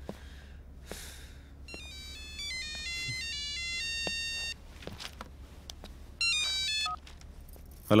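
A mobile phone ringtone plays a melody of electronic beeping notes, starting about two seconds in and running for nearly three seconds. It rings again, louder and shorter, near the end, and the call is then answered.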